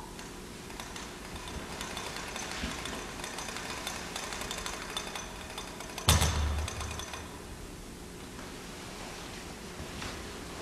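Handling and cloth-rustling noise as a priest moves a monstrance under a humeral veil, with a sudden heavy thump and low rumble about six seconds in.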